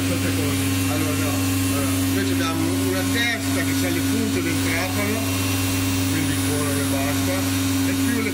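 COSMEC FOX 22 S CNC machining centre running with a steady, even hum.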